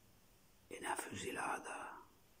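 A man's soft, half-whispered speech: a couple of words of Milanese dialect, beginning under a second in and lasting about a second.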